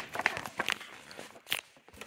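A book page being turned: several light paper rustles and taps, then a brief louder swish about one and a half seconds in.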